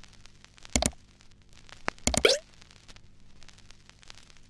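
Two short pop sound effects about a second and a half apart, the second sliding down in pitch, over a faint low hum.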